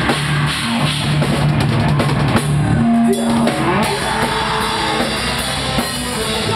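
Live rock band playing loud on electric guitars and drum kit. The low held riff breaks off about halfway through and the song moves into a new part.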